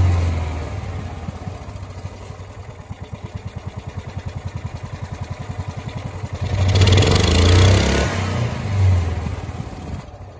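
Kawasaki FE290D single-cylinder engine of a John Deere Gator running, throttled by hand at the carburetor linkage. It drops from a rev to a slow idle with distinct firing pulses, is revved up for about a second and a half about six and a half seconds in, blipped again near the end, and settles back without cutting out. It is running on a new ignition coil, which cured its loss of spark.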